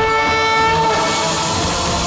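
Dramatic TV background-score sting: a held, horn-like synth note that fades about a second in, followed by a swelling whoosh of noise.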